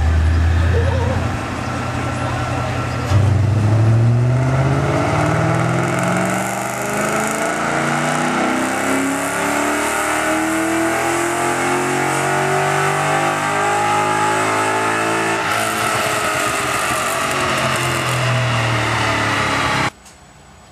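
1994 Lincoln Mark VIII's 4.6-litre DOHC V8 making a full-load pull on a chassis dyno. It runs steadily for about three seconds, opens up, climbs steadily in pitch for about twelve seconds, then eases off with the pitch falling near the end.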